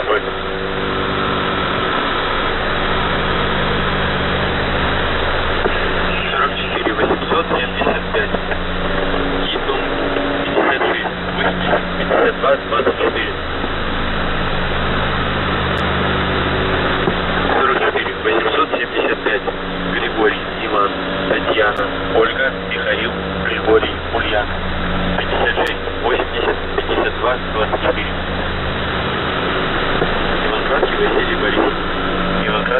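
Shortwave receiver audio on 3756 kHz, heard through a web SDR: a noisy, static-laden signal with a steady low hum that drops out now and then. Garbled, voice-like fragments come and go over the hum.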